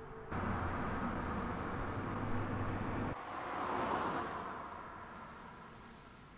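Mercedes-Benz CLA coupé driving on a road, engine and tyre noise. The sound cuts in suddenly, changes abruptly about three seconds in, swells to a peak about a second later, then fades as the car draws away.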